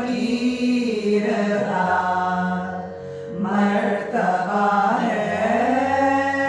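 A small group of women singing a devotional chant together, drawing out long held notes that glide from pitch to pitch, with a brief pause for breath about halfway through.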